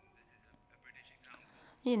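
A pause in the talk, with only a faint voice murmuring in the background. Clear speech resumes loudly just before the end.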